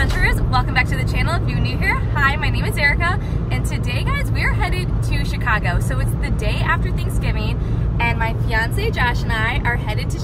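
A woman talking inside a moving car, over the steady low rumble of road and engine noise in the cabin.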